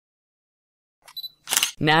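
Dead silence for about the first second, then a voice starts reading a short sentence aloud near the end.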